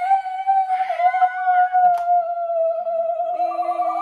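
A woman's voice holding one long, high 'ooh' of excitement without a break, wavering slightly. A second, lower voice joins about three and a half seconds in, sliding down in pitch.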